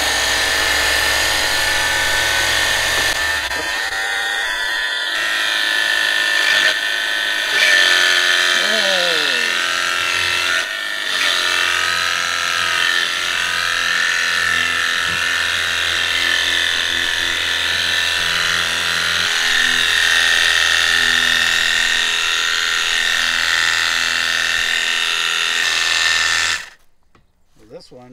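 VEVOR cordless battery power washer running, its small electric pump giving a steady whine while the spray hisses. A low hum under it drops away about three seconds in, and the sound cuts off suddenly near the end.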